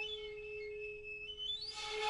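Shinobue (Japanese bamboo transverse flute) holding a faint, thin low note, with breathy hiss swelling near the end. It is a weak, odd-sounding tone: relaxing the breath after overblowing into the octave above does not bring back the full low note.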